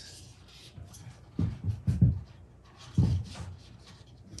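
A paper strip rustling and rubbing as it is wrapped and adjusted around a foam head form, in short bursts of handling about a second and a half in, at two seconds and at three seconds.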